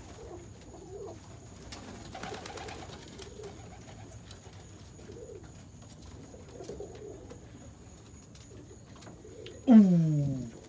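Domestic pigeons cooing softly, low coos repeating every second or so, with a brief rustle about two seconds in. A much louder falling call comes just before the end.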